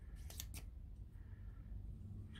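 Small plastic telescoping spear accessory (a 1/6-scale Predator combistick) being pulled out to extend it, giving two faint clicks about half a second in.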